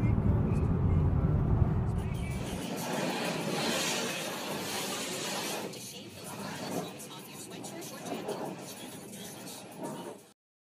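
Car road noise heard from inside the cabin while driving, a steady low rumble that cuts off about two and a half seconds in. A fainter, hissier cabin noise follows and slowly fades.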